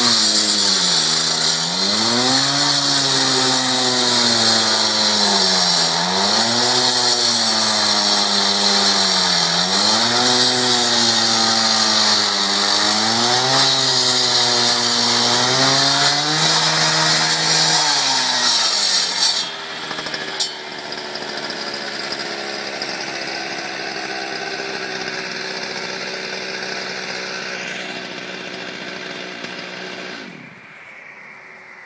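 A two-stroke gas cut-off saw cuts through asphalt. Its engine note sags and recovers every few seconds as the disc bites, under a gritty grinding. About two-thirds of the way through the cutting stops and the saw drops to a quieter, steadier running.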